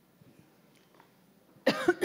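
Faint room tone, then near the end a woman coughs sharply into a handheld microphone.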